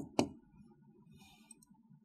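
Two sharp taps of a stylus pen on an interactive display screen, a fifth of a second apart at the start, followed by a faint brief rustle.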